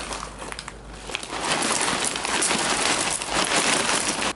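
A plastic bag rustling, then from about a second in a steady rush of cornflakes pouring from the bag into a ceramic bowl.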